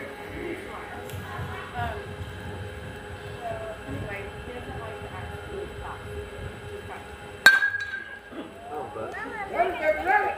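A metal baseball bat hits a pitched ball about three-quarters of the way through, a single sharp ping with a brief ringing tone. Spectators start shouting and cheering right after it, over low background chatter.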